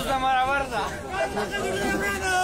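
People talking, speech only, with voices that sound like chatter.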